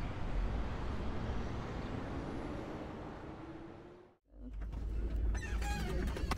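Street ambience with a steady wash of distant traffic noise, fading out about four seconds in. A moment of silence follows, then a quieter background with a few faint high squeaks near the end.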